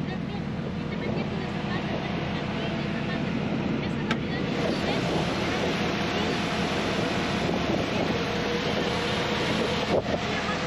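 Chevrolet Suburban's V8 engine idling steadily, growing louder about halfway through as the microphone nears the open hood.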